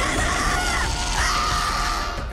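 A demon's drawn-out, wavering scream over loud background music.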